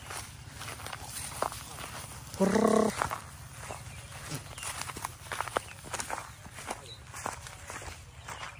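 A goat bleats once, a short steady call about two and a half seconds in, the loudest sound here. Around it, footsteps and rustling through grass.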